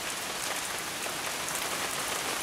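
Steady rain pouring down in a storm, an even hiss with no thunder.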